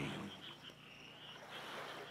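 Faint background chorus of frogs calling at night, a steady high-pitched chorus with no other sound.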